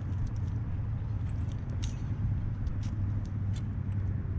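Steady low rumble with scattered light clicks and rustles as wet weeds and bowfishing line are handled.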